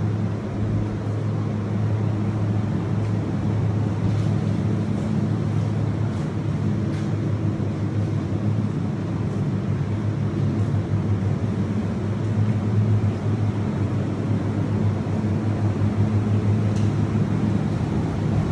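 Cool-room refrigeration unit running, its evaporator fans giving a steady low hum.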